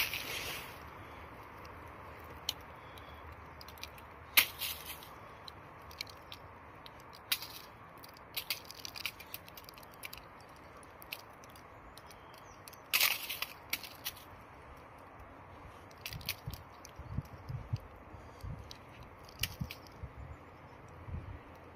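A clod of soil crumbling and rubbing between gloved fingers as it is broken apart: scattered soft crackles, with two louder cracks, one about four seconds in and one about thirteen seconds in.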